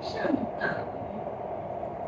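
C751C metro train running through a tunnel: steady rumble with a band of hum, after a brief snatch of a voice at the start.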